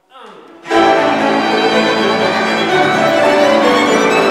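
A string ensemble led by violins starts playing loudly under a second in, with several sustained, bowed lines sounding together.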